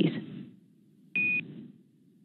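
The last word of a radio call on the mission communications loop. About a second later comes one short, single-pitch beep over the same radio channel.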